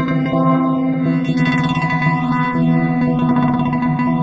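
ASM Hydrasynth Explorer synthesizer holding a sustained chord. Its tone sweeps up and down over and over as modulation moves through the sound.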